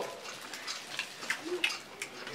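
Faint, scattered clicks and small handling noises, a few a second and unevenly spaced, as a man handles and eats a small snack.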